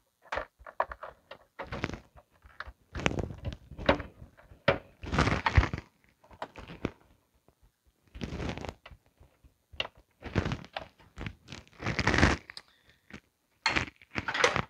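Hands plugging cables into a desktop PC's hard drive and boards: irregular clicks, knocks and rustles of plastic connectors and cables, with short quiet gaps.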